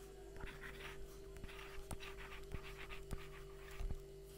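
Faint handwriting on a touchscreen: a run of short scratchy pen strokes with a few light taps, over a steady low hum.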